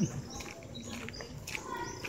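Birds chirping in short, high calls that come several times a second, over footsteps on a path.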